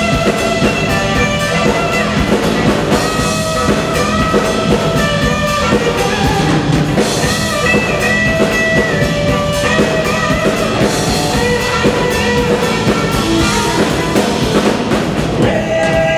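Live electric blues band playing: electric guitar over a drum kit, with amplified harmonica playing held, bending notes.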